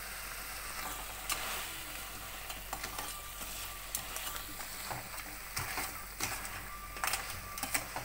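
Crab masala sizzling in a steel pan while a perforated steel ladle stirs it, scraping and clinking against the pan, with the clinks coming more often in the second half.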